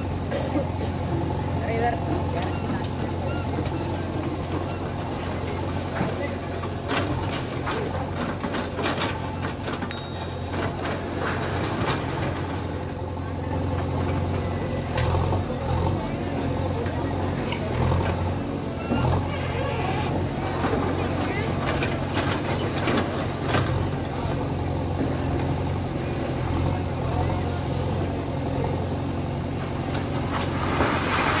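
JCB backhoe loader's diesel engine running steadily as its bucket pushes down a brick-and-concrete structure, with scattered knocks and crumbling of breaking masonry.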